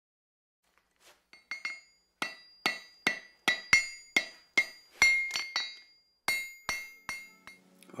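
Screwdrivers clinking as they are dropped into the holes of a wooden screwdriver holder. About eighteen sharp clinks come in irregular succession, each with a brief ringing note, and they grow fewer and fainter near the end.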